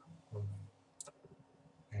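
A single sharp click of a computer mouse button, about halfway through, against faint room tone.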